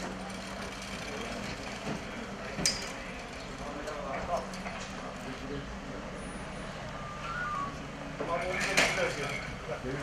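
Outdoor ambience with a steady low hum and faint voices, and a metal clatter about nine seconds in as a folding wheelchair is loaded into the back of a van.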